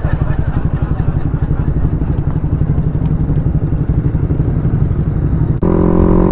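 Suzuki Raider Fi 150's single-cylinder engine, running on its stock ECU, pulling hard under acceleration with rapid, even exhaust pulses. Near the end there is a brief dip as it changes gear, and then it settles into a steady drone.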